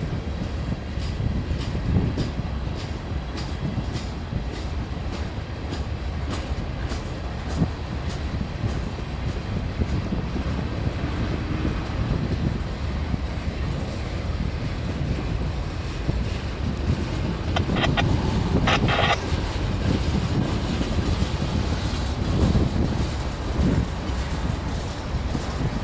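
Freight train of loaded trash gondola cars rolling past, a low rumble with wheels clacking over rail joints about twice a second. A brief high metallic squeal of wheels rises out of it about three-quarters of the way through.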